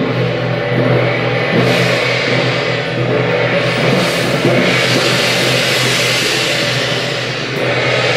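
Long brass shaojiao horns blowing low held notes, with drums and cymbals of a temple procession band crashing over them in loud, continuous music.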